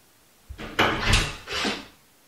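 A wooden interior door with glass panes being opened: handle and latch working, then the door swinging open. It comes as several loud rustling swells starting about half a second in and lasting about a second and a half.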